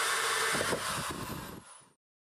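Corded electric drill turning a small hole saw through the plastic wall of a 55-gallon drum: a steady whir that changes about half a second in and fades away near the end.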